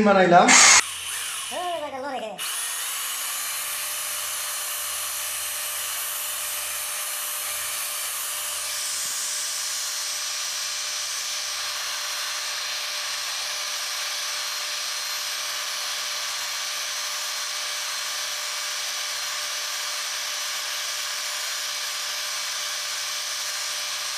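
Cordless drill running steadily, spinning an abrasive grinding rod against the inside of a ceiling fan's rotor ring as the ring is turned by hand. It starts about two seconds in and holds an even level, growing a little brighter in tone after about eight seconds.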